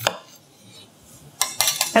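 Kitchen knocks and clinks: a single sharp knock of a knife going through a lemon onto the cutting board at the start, then a quick cluster of clattering clinks from glass kitchenware, a citrus juicer and bowl, about a second and a half in.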